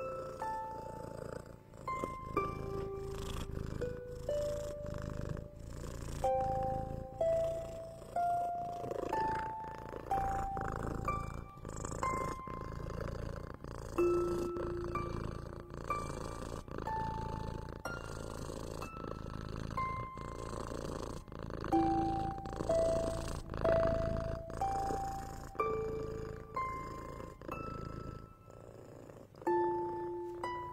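A slow, gentle melody of single soft plucked notes, about one a second, over the continuous low purring of a cat, which swells and fades every couple of seconds.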